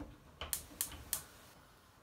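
Four or five light, sharp clicks in the first second or so, then a quiet room.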